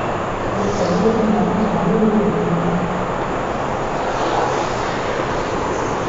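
Chalk drawing circles on a blackboard, a few faint strokes, over a steady background rumble and hiss.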